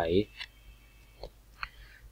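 A spoken word ends at the start, followed by near quiet with three or four short, faint clicks spread through the rest.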